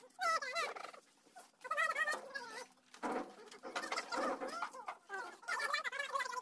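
Domestic chickens calling: a string of short, wavering, warbling calls, with a noisier stretch in the middle.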